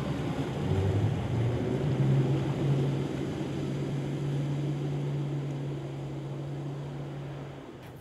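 Electric ski boat under way: rushing water with a low motor hum that rises in pitch over the first two seconds, then holds steady. The sound slowly fades and dies away just before the end.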